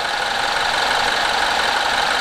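BMW N13 1.6-litre turbo four-cylinder engine idling steadily and smoothly just after its first start on new valve stem seals.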